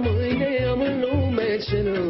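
A male voice singing a Romanian folk song with vibrato over band accompaniment with a steady bass beat.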